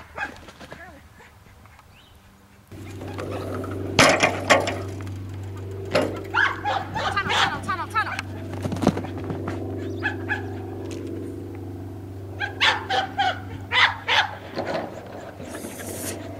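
A dog's excited yips and whines in short bursts during an agility run. Under them a steady low hum starts abruptly about three seconds in.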